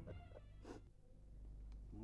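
Near silence: the background music fades out, then a low hum, with one brief faint sound about two-thirds of a second in.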